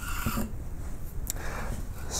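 Steel skew chisel being rubbed on an oiled coarse bench stone: a short scraping stroke at the start, then fainter rubbing, with one sharp click a little past halfway.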